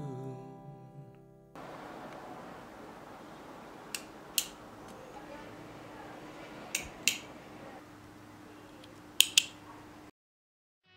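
Background music fades out in the first second and a half. Then a metal retractable ballpoint pen is clicked: three quick double clicks, a few seconds apart, over a quiet room hiss.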